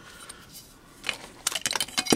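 An architect's scale ruler being lifted and slid off a woven fabric mat: a cluster of small clicks and scrapes starts about a second in and lasts about a second.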